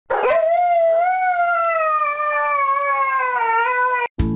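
A dog howling: one long howl that rises quickly at the start, holds, and slowly sinks in pitch toward the end.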